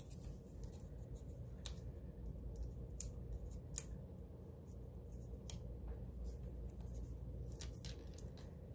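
Faint scattered clicks and light rustles of paper planner stickers being handled and placed on a page, over a low steady hum.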